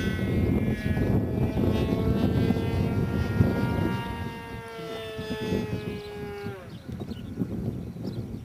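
Radio-controlled GeeBee profile 3D model plane's motor and propeller whining high overhead at a steady pitch that sags slightly, then cutting off about six and a half seconds in as the throttle is closed for a glide. Low wind rumble on the microphone underneath.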